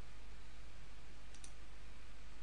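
A computer mouse clicking: two quick ticks close together about a second and a half in, over a steady hiss.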